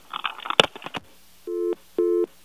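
A sharp click and brief noise on a telephone line, then a telephone busy tone begins near the end, low beeps a quarter second long, about two a second: the call has been disconnected at the other end.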